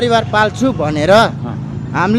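A person speaking, over a steady low hum.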